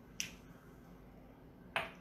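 Two short, sharp clicks about a second and a half apart, the second one louder.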